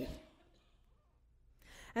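A woman's voice trails off at the start, followed by a pause of near silence, then a sharp, audible in-breath near the end just before she speaks again.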